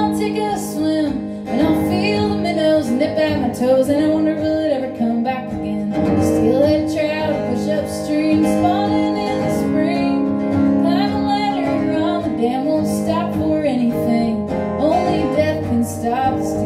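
Live solo performance: a woman singing a folk song while strumming an acoustic guitar, heard through the hall's PA.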